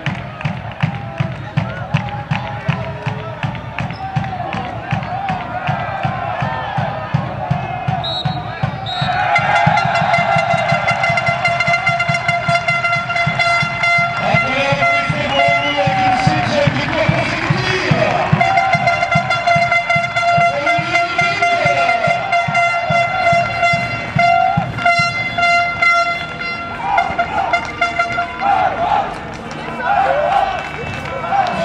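Football supporters' drum beating steadily under crowd chanting. From about nine seconds in, a horn is blown over it in long held notes with short breaks.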